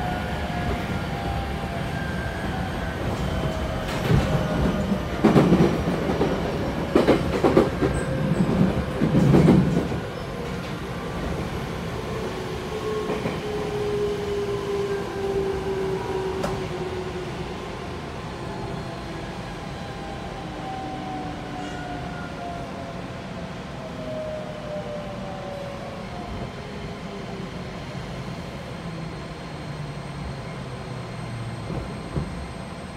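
205 series electric train's Toyo IGBT-VVVF inverter heard from inside the car, its whine falling steadily in pitch as the train brakes to a stop at a station. From about four to ten seconds in, the wheels clatter loudly over rail joints.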